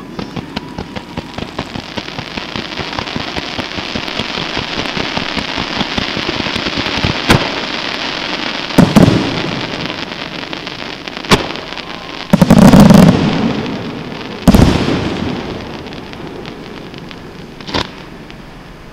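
Fireworks display: a dense, rapid crackling that builds steadily, broken by heavy bangs about halfway through, a loud sustained volley of booms a few seconds later, then another bang and a last one near the end.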